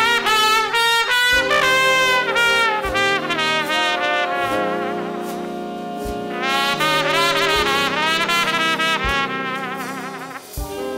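Jazz big band playing a slow swing ballad: a solo trumpet carries the melody with a wide vibrato over sustained saxophone and trombone chords, with light drum accents. The trumpet drops back for a couple of seconds in the middle, leaving the held chords, then comes in strongly again about seven seconds in.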